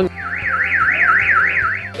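Car alarm siren sounding, its pitch sweeping up and down about four times a second.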